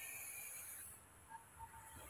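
Near silence: a faint steady hiss of background noise that drops away about halfway through.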